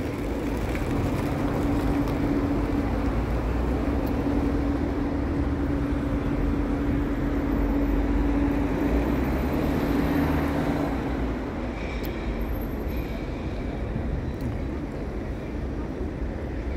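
City street traffic: vehicle engines running, with a steady droning engine tone that fades out about eleven seconds in, over a continuous low rumble.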